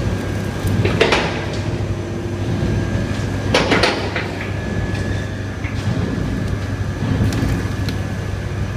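Diesel engine of a loading machine running steadily, with two loud clattering knocks about one and three and a half seconds in as steaming compost is tipped into a trailer.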